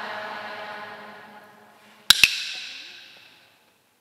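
The last held note of a sung chant fades away, then about two seconds in a wooden clapper is struck twice in quick succession, with sharp clacks that ring on in the church's reverberation.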